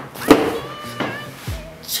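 Cardboard pizza box being grabbed and handled on a table, with one sharp knock about a third of a second in and two lighter knocks after it. Background music plays underneath.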